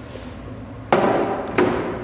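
A jigsaw being set down on a tabletop: two sharp knocks about two-thirds of a second apart, each ringing briefly.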